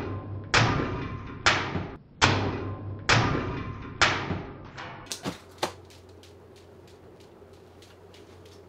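Sharpened ceiling fan blades striking and slicing into a watermelon held up into the spinning fan: six hard chops about a second apart, each ringing off briefly, then a few lighter ticks. The fan's low steady hum runs underneath after the strikes stop.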